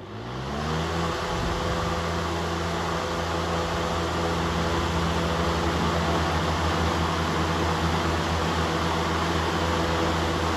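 Two 18-inch high-velocity floor fans, an Air King 9218 and a TPI F-18-TE, switched on high: a rising whine as they spin up over about the first second, then a steady rush of air over a motor hum.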